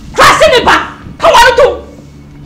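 A woman's voice shouting in two loud outbursts, each under a second long, in a heated argument.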